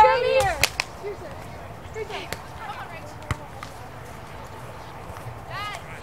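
A beach volleyball being struck by players' hands and arms during a rally: a few sharp slaps spread over the first few seconds. Players shout at the start and again near the end.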